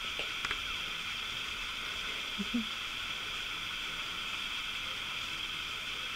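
Steady background hiss with a few faint clicks about half a second in and a short, quiet low sound about two and a half seconds in.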